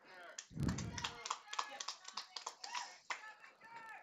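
Faint background talking, with scattered light taps and clicks and a low thump about half a second in.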